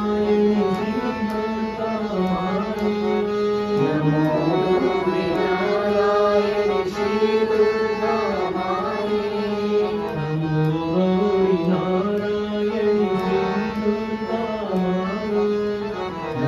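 A devotional bhajan sung by a small group of voices, with a harmonium playing along and holding long notes under the melody.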